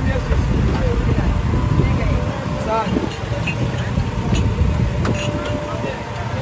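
Busy street ambience: a steady low rumble with snatches of voices, and a few light clinks as glasses are handled.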